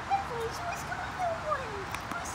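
A young lab–boxer mix dog whining in a string of short, wavering whines, the first one the loudest.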